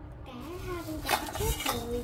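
Stainless steel bowls from a nested set of three, handled in their plastic wrap, giving a couple of light metallic clinks under a man's low, wordless murmuring voice.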